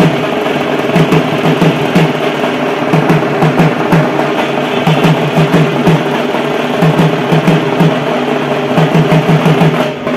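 Barrel drums (dhol) beaten live in fast rolls that come in repeated groups, loud over steady music.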